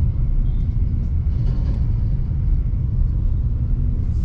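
Steady low rumble of a car's engine and tyre noise heard inside the cabin while it drives through a roundabout.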